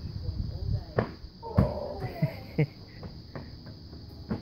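Large inflatable beach ball landing and bouncing, a few hollow thuds in the first three seconds, the loudest about one and a half seconds in.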